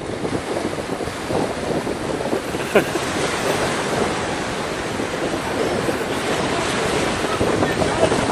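Rough sea surf breaking steadily on a beach, with wind buffeting the microphone.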